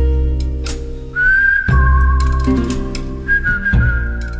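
Theme music for a TV programme's title sequence: a whistle-like lead holding long high notes over a heavy, steady bass, with a short upward slide into a higher note about a second in.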